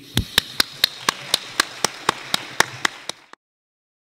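Close, steady hand clapping, about four claps a second, over a fainter haze of wider applause. It cuts off suddenly a little after three seconds in.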